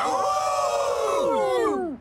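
Several elderly men's voices join in one long, wolf-like cheering howl that falls in pitch and dies away near the end.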